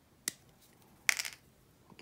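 Hobby sprue cutters snipping a plastic miniature part off its sprue: a light click, then a sharper, louder snip about a second in.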